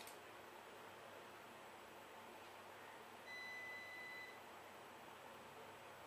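Near silence with a single electronic beep about three seconds in: one steady high tone lasting about a second.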